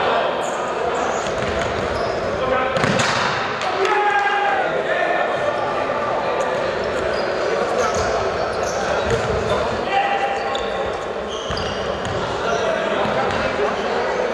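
Indoor football played in a sports hall: the ball being kicked and bouncing on the wooden floor with a few sharp knocks, short high squeaks of shoes, and voices of players and onlookers calling out, all echoing in the large hall.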